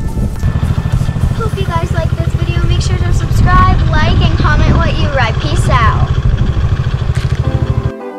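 Small youth quad's engine running, a steady low pulsing drone that cuts off abruptly near the end, with a child's voice over it in the middle.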